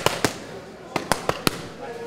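Boxing gloves smacking into focus mitts during padwork: two quick punches at the start, then a fast four-punch combination about a second in.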